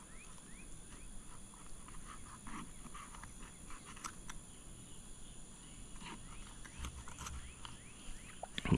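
Quiet knife work on a flounder: a fillet knife cutting along the fish's backbone, with soft scattered clicks. A bird chirps a quick run of short rising notes near the start.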